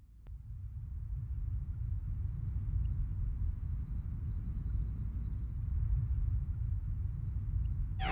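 A low, steady rumbling drone fades in over the first second and then holds evenly.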